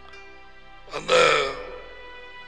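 Soft background music with long held tones, broken about a second in by one short, loud throat noise from a person close to the microphone, lasting about half a second.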